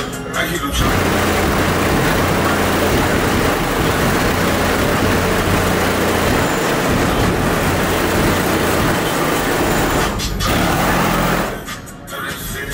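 Heavy bass from a Lincoln Town Car's trunk sound system playing very loud, coming through as a harsh, distorted roar with the bass notes shifting underneath. It starts about a second in, breaks briefly near the end, and stops just before the end.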